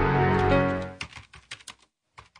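Intro music fading out in the first second, then a quick run of keyboard-typing clicks, a typing sound effect.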